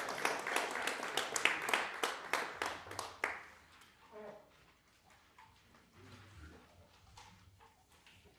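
A small audience clapping, a scatter of separate claps that dies away about three seconds in. Then quiet room noise with faint shuffling and murmured voices.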